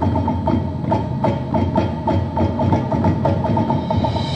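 High school marching band's percussion playing a steady, driving rhythm: repeated pitched mallet notes about four a second over drums.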